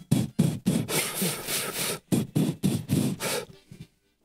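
Diatonic harmonica played in quick, breathy rhythmic pulses of about five a second, with a longer sustained breath in the middle. The pulses stop shortly before the end.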